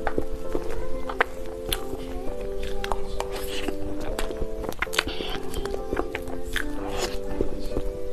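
Background music of held, slowly changing chords, over close-miked eating sounds: a metal spoon clicking and scraping through cake, and many sharp mouth clicks of chewing.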